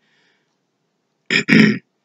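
Near silence, then a man clears his throat about a second and a half in, in two short rough bursts, the second longer.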